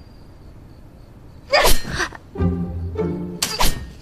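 A sudden loud vocal burst about a second and a half in, then background music comes in with low sustained notes and a sharp hit near the end.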